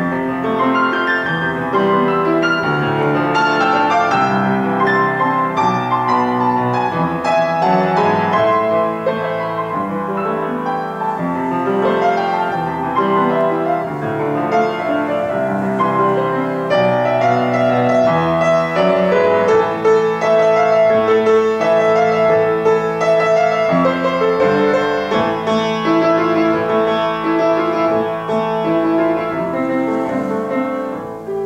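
A grand piano played solo, an unbroken flow of notes and chords from a piano medley.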